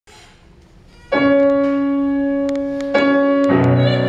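Grand piano playing the opening bars of a romance's introduction: a sustained chord enters about a second in, a second chord follows near the three-second mark, and lower bass notes join just after.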